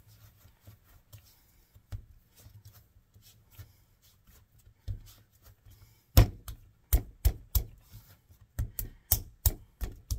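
Hands rolling a lump of moist clay into a log on a wooden tabletop: quiet rubbing at first, then from about six seconds in a run of sharp slaps, two or three a second, as the clay is pressed and slapped against the board.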